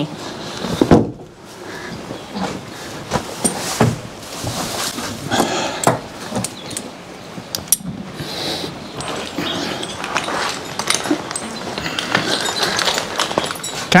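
A harnessed Percheron draft horse moving about and getting into a hay bale: irregular clinks of harness hardware, rustling and knocks.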